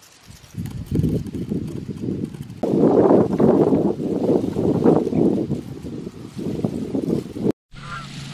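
Wind buffeting the microphone, a dense low rushing that grows louder about two and a half seconds in and cuts off suddenly near the end.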